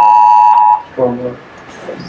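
Amber Alert tone on a mobile phone: the emergency alert's loud, steady two-pitch blare, its second burst cutting off about three-quarters of a second in.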